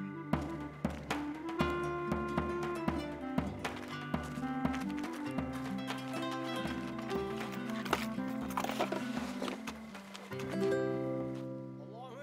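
Background music: a light melody of held notes over a quick, steady tapping beat.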